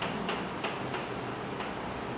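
Chalk tapping and scratching on a blackboard as figures are written: a string of short, irregularly spaced clicks over a steady background hiss.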